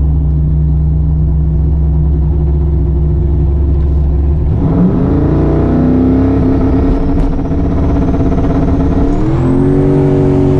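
Turbocharged 408 LS V8 heard from inside the cabin, running at a low steady idle, then brought up to a flat, held rpm about halfway through, typical of holding on the two-step launch limiter, while a thin high whine climbs above it. About a second before the end the revs step up again as the car launches.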